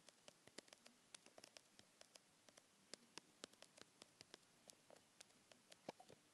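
Faint, irregular clicks of typing on a phone's touchscreen keyboard, a few a second, with one slightly louder click near the end.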